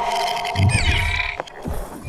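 Sound effects of an animated logo intro: a loud sustained whoosh-like swell that fades, a low hit about half a second in, quick falling glitchy sweeps, and a few sharp clicks near the end.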